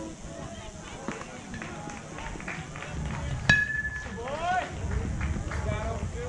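A single sharp metallic ping with a brief ringing tone, about three and a half seconds in, typical of an aluminum baseball bat striking the ball. It is followed by spectators shouting and chattering.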